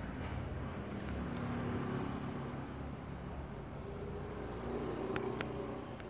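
Steady low engine rumble in the background, with two faint clicks about five seconds in.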